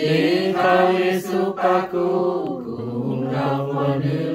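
A small group of men and women singing a hymn together without accompaniment, in long held notes that step to a new pitch every second or so.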